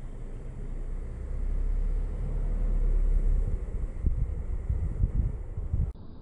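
Low rumble of wind buffeting the microphone, swelling in the middle, then giving way to irregular low thumps of handling noise as the camera is moved; it cuts off suddenly at the end.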